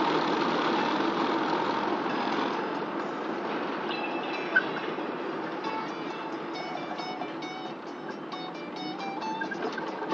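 Steady road and engine noise inside a moving car. From about four seconds in, music with short plucked notes plays over it. There is one brief sharp click near the middle.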